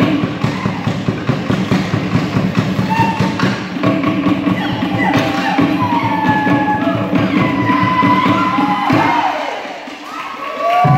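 Fast Polynesian drumming, a dense rapid rhythm of drum strokes with voices calling over it, which stops about nine seconds in.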